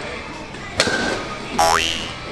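A metal Mitsuwa Tiger Hyper Whip bat strikes a rubber (M-ball) baseball off a batting tee, a sharp crack with a brief metallic ring. Just after it, a loud tone glides upward in a boing-like sweep.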